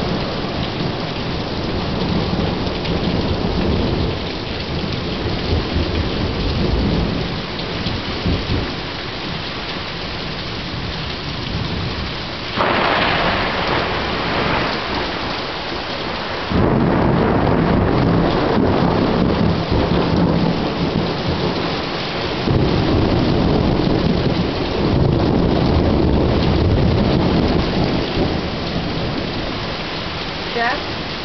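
Heavy rain falling steadily through repeated rolls of thunder. A sudden sharp thunderclap comes about twelve seconds in, followed a few seconds later by long, loud rumbling that lasts most of the rest of the time.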